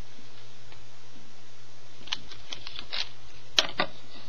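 Irregular light clicks and taps of a plastic Rainbow Loom and its hook being handled as rubber bands are worked onto the pegs. The clicks start about halfway through, with two sharper ones near the end, over a steady low hum.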